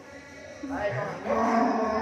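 A cow mooing: one long call that starts about two-thirds of a second in and is held for over a second.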